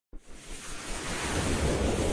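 A whooshing rush of noise that swells steadily from near silence: the riser sound effect of an animated logo intro.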